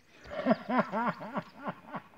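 A person laughing: a quick run of short chuckles, about four a second.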